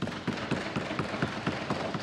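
Members of a parliamentary chamber applauding: a dense, irregular crackle of claps and desk-thumps.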